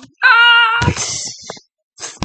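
A person's high-pitched vocal squeal, held steady for about half a second, then a thump and a breathy trailing sound.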